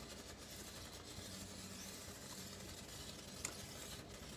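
Faint stirring of a thick lime pie filling with a spatula in a stainless steel saucepan set over a pan of hot water, under a steady low hiss. One small click near the end.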